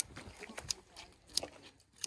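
Three faint, sharp clicks about two-thirds of a second apart: a lighter being struck, failing to light the gasoline.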